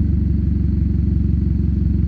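An engine idling steadily, a low even rumble with no change in speed.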